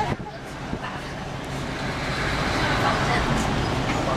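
A bus engine's steady low hum and road noise, heard from inside the bus cabin. A rush of noise swells through the second half as another vehicle draws close.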